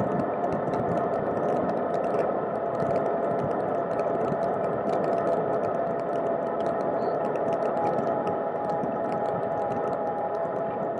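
Cargo bike rolling along a paved path, heard through a camera case hard-mounted on its frame: a steady rumble of tyre and road noise with wind. A constant patter of small clicks and rattles runs through it, along with a faint steady hum.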